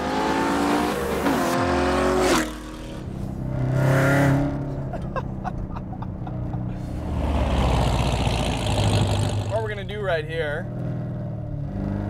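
C7 Corvette's 6.2-litre V8 accelerating hard, revs climbing for a couple of seconds and then cutting off sharply, followed by more engine and road noise. A man's voice comes in near the end.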